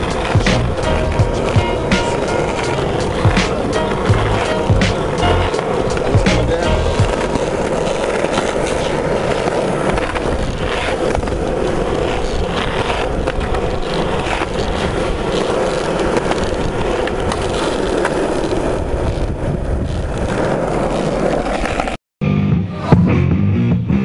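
Skateboard wheels rolling over rough asphalt in a steady grinding rumble, with sharp clacks of the board striking the ground, more frequent in the first half. Hip-hop music plays underneath.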